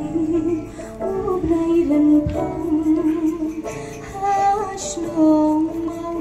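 A woman singing a song live through a PA system, holding long notes, over amplified instrumental accompaniment.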